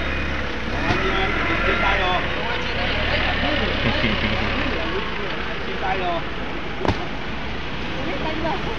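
A vehicle engine idling with a low steady hum that weakens about five seconds in, under people talking in the background. One sharp knock near the end.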